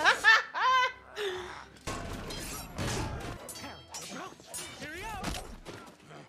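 A woman laughing hard in several short bursts for about the first second. Then comes a busy animated-show soundtrack, a dense mix of music and noisy action effects.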